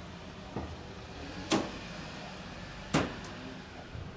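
The plastic front fan grille of a Samsung air conditioner outdoor unit being unclipped and pulled off: two sharp clicks about a second and a half apart, with a fainter knock before them.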